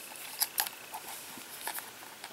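Handling noise from a compact camera turned over in the hands: a few small, sharp clicks and taps of fingers on its body and controls.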